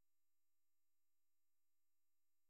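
Near silence: a gap in the narration, with nothing audible but a very faint, steady electronic noise floor.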